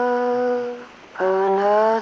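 A voice humming a slow wordless tune in two long held notes, with a short break about a second in; the second note slides slightly up in pitch.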